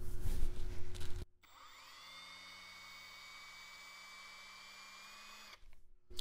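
Electric drill spinning a tapered reamer on a half-inch drill extension. About a second of loud running cuts off abruptly, then a fainter motor whine rises in pitch and holds steady until near the end.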